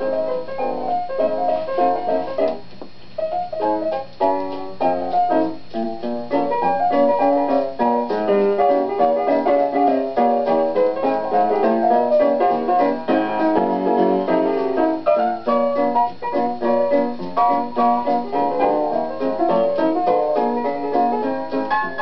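Jazz piano playing a lively stomp with busy chords in both hands, from a 1940 live radio broadcast recording that sounds dull and narrow, with no high treble.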